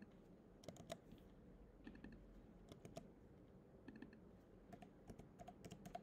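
Faint typing on a computer keyboard: scattered keystrokes in short irregular runs, busiest in the last couple of seconds.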